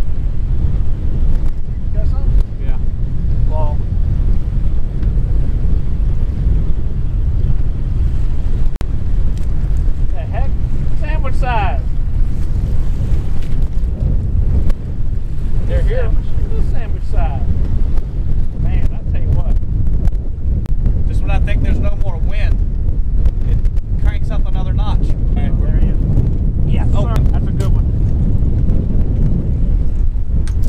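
Strong wind of about 20–25 mph buffeting the microphone, a loud, steady low noise. Faint shouted voices break through it now and then.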